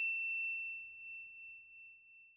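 The last high note of a chime sound effect from a logo sting rings on at one steady pitch and slowly fades away.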